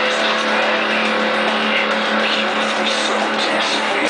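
Hollow-body electric guitar played through an amplifier with heavy distortion: rock chords played continuously as one dense, sustained wall of sound.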